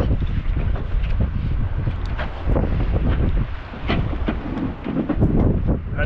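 Strong wind buffeting an action camera's microphone, a heavy low rumbling, with a few short knocks in between.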